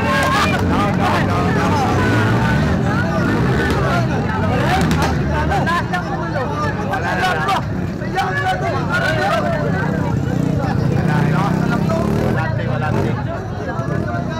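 Several people talking at once close by, over the steady sound of motocross bikes running on the dirt track.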